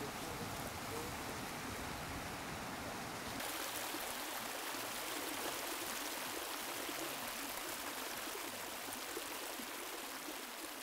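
Steady rushing and bubbling of hot-spring water, with a slight change in tone about three seconds in.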